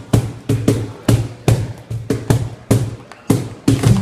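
Cajón (box drum) struck by hand in a quick, uneven rhythm of about three strikes a second, mixing sharp slaps with deep bass thumps.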